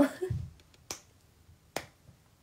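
A woman's short laugh, then two sharp clicks a little under a second apart.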